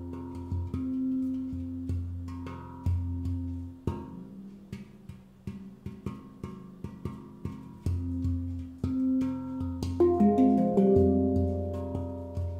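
Svaraa Low F2 Pygmy handpan, a hand-hammered steel handpan, played with the fingers: deep low notes and higher tone fields ring and sustain. In the middle comes a run of quicker, quieter finger taps, and the loudest strikes fall about ten seconds in.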